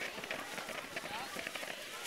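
Midnight Magic consumer firework spraying sparks and small stars, giving a steady stream of small crackles and pops.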